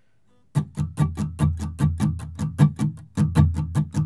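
Steel-string acoustic guitar strummed with a pick in a fast, even rhythm, starting about half a second in, switching between A and E chords. There is a brief break in the strumming just after three seconds.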